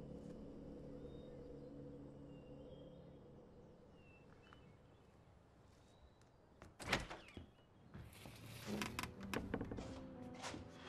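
A glass-paned French door being handled: a single sharp thud about seven seconds in, then a run of latch clicks and rattles as the door is opened near the end. Before that a low steady drone with faint bird chirps fades away.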